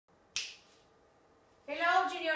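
A single sharp, bright snap about a third of a second in, dying away quickly, then a woman's voice begins near the end.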